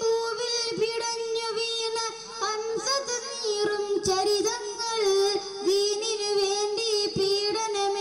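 A boy singing a devotional song solo into a microphone. He holds long notes, ornamented with wavering turns and slides.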